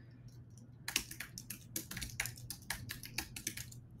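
Typing on a computer keyboard: a quick run of key clicks starting about a second in.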